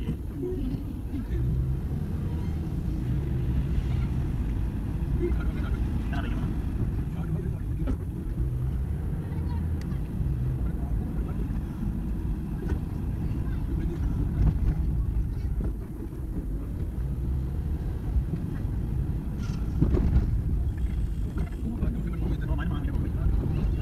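Inside a moving car: a steady low rumble of engine and road noise as it drives along a rough street, with a slightly louder stretch near the end.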